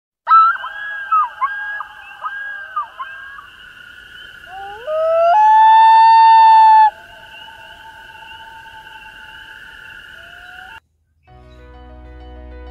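A wailing call over a steady drone. It opens with a run of short, quick up-and-down calls, then glides upward about five seconds in to one loud held note lasting about a second and a half, and the drone cuts off near the end.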